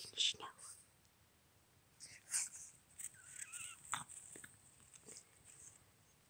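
Soft whispered speech in short, broken bursts.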